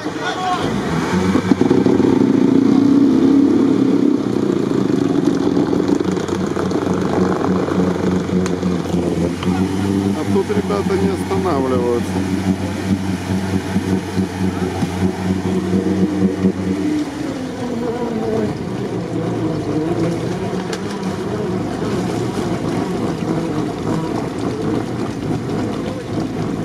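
A 4x4's engine held at high revs as the vehicle churns through deep water, at a steady pitch and loudest in the first few seconds. About two-thirds of the way through it falls away, leaving water and background voices.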